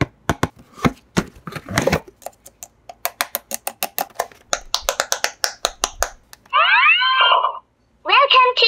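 Quick clicks, taps and crackles of hands opening and handling toy packaging, with a short rustle about two seconds in. Near the end a pitched sound, about a second long, slides in pitch and cuts off suddenly.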